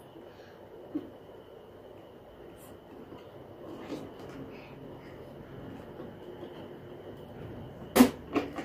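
A child blows steadily into a rubber balloon inside a plastic bottle, making a faint breathy rush. A small click comes about a second in. The balloon can now inflate because a hole cut in the bottle lets the trapped air out.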